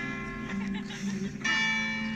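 Music of struck, bell-like ringing notes that sustain and slowly fade, with a fresh chord struck about a second and a half in.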